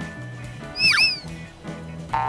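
Light background music, with a short comic editing sound effect about a second in: a quick whistle-like swoop whose pitch rises and then falls.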